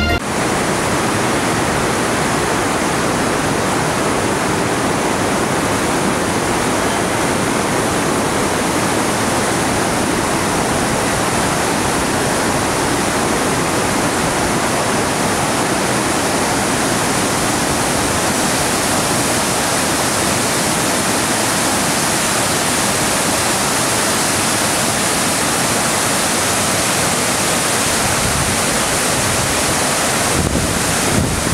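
A river in full flood: fast, muddy floodwater rushing past in a loud, unbroken noise.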